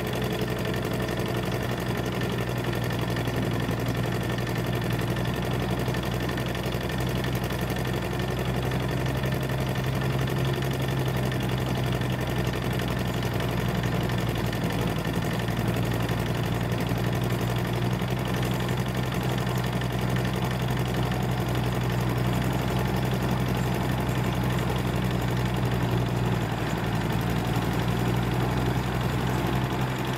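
A motor grader's diesel engine running steadily as it blades and spreads a gravel road base.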